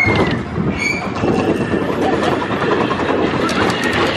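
Slinky Dog Dash roller coaster train running along its steel track, a steady rumble and rattle of the wheels with the rush of air.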